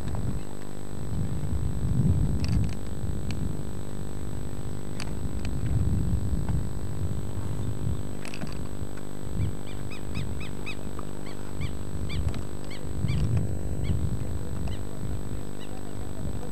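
A bird calling in a quick run of short, high chirps through the second half, over steady low rumbling and hum, with a few sharp clicks early on.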